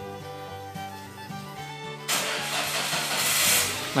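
Toyota Rush engine started with the key, with a rising rush of engine noise from about two seconds in as it catches. The car's weak (tekor) battery, charged briefly by a jump start, now starts the engine on its own.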